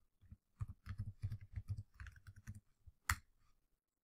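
Computer keyboard keys typed in a quick run for about two seconds as a password is entered at an SSH prompt. About three seconds in comes one louder keystroke, the Enter key that submits it.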